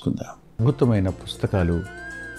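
A man's voice, then music: a short voiced phrase gives way to sustained musical notes about one and a half seconds in.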